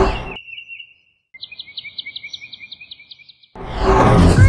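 A loud sound dies away at the start. Then come a thin high whistle and a high, rapid chirping trill like cartoon birdsong, lasting about two seconds. Half a second before the end, a loud rushing burst breaks in.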